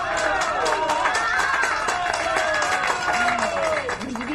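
An audience of many voices cheering and calling out at once over clapping.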